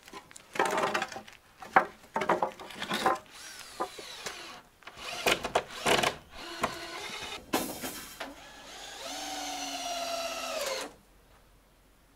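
Wooden boards knocking and clattering as they are picked up, sorted and carried, then a cordless drill runs steadily for about two seconds near the end and stops suddenly.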